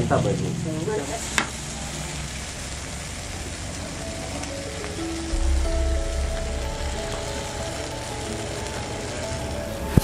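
Eggplant frying in oil in a wok, a steady sizzle, with a sharp click about a second and a half in. Background music with bass notes comes in about halfway through.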